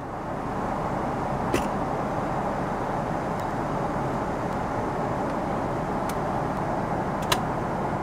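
Steady cabin noise of a Boeing 777-300ER in cruise, a low even rushing sound, with two light clicks, one about a second and a half in and one near the end.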